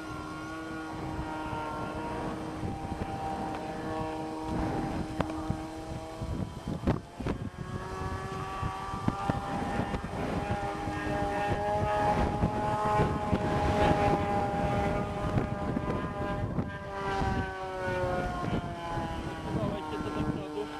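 Engine of a radio-controlled model airplane droning in flight, a continuous buzzing note whose pitch drifts slowly, rising a little in the middle and falling again near the end.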